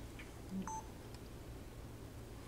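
A short electronic beep, two quick tones one after the other, a low one then a higher one, about half a second in, over a steady low electrical hum.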